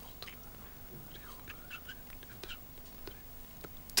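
Quiet studio room tone with faint whispering and a few small clicks.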